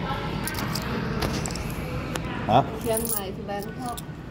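Quiet talk with a few light clicks and rustles as paper banknotes are handled on a counter.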